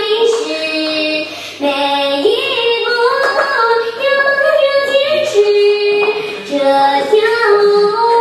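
A song sung by a high, female-sounding voice, with held notes in a stepwise melody and brief breaks between phrases.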